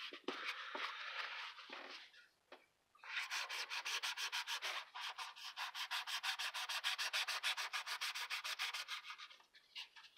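A long knife used as a saw, cutting through EVA foam with rapid back-and-forth strokes, about eight a second, with a short pause about two seconds in.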